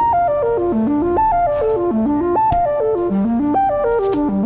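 Electronic keyboard playing a repeating riff that steps down in pitch and climbs back up, about once every second and a half. A few light percussive clicks and a brief hiss are laid over it.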